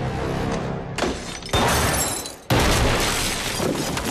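Film sound effects of glass and plaster shattering and breaking apart under gunfire. The noise starts suddenly about a second in, cuts out briefly just before halfway and comes back loud, over tense film score.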